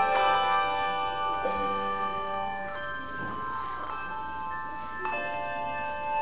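Handbell choir ringing: chords of struck handbells with long ringing tones, new chords struck near the start, about a second and a half in and again about five seconds in, each left to ring and fade.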